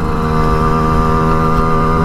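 Simson moped's small two-stroke single-cylinder engine running at steady high revs: one unchanging note.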